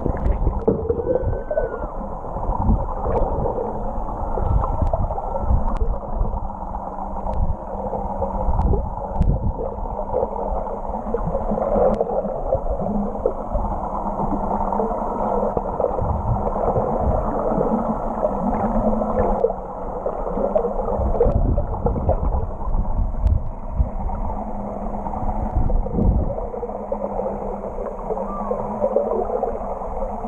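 Underwater sound heard through an action camera's waterproof housing: muffled churning and gurgling of water with irregular low thumps as the swimmer moves, over a steady low hum.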